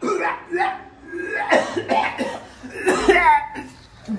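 A man coughing loudly in several bouts, with voiced, straining sounds from the throat between them.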